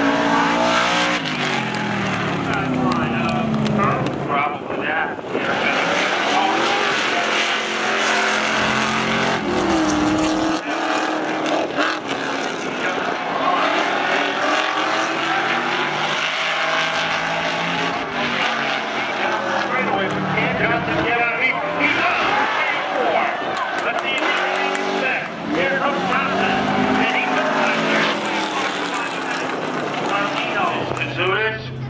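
Street cars' engines at full throttle in a drag race, their pitch climbing through each gear and dropping at the shifts, again and again.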